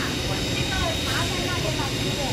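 Steady low rumble of a forklift engine idling, with people talking in the background.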